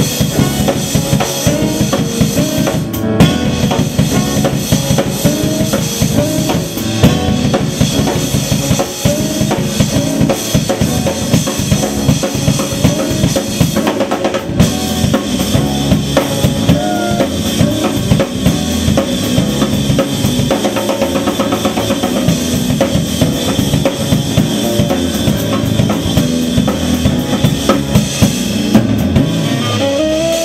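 Live jazz drum kit played busily and to the fore, with snare, bass drum and cymbals, over a walking electric bass line.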